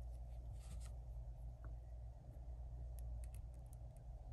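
Faint clicks and light rubbing of small plastic action-figure parts as a tiny batarang is pressed into a plastic trigger-finger hand, over a low steady hum. There is a small cluster of clicks about half a second in and a few thin ticks around three seconds.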